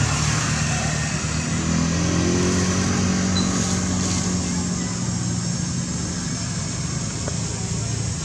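An engine running steadily nearby, a continuous low hum that shifts slightly in pitch about two seconds in.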